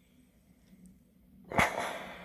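Philips steam iron giving a shot of steam: a sudden hiss about one and a half seconds in, then fading.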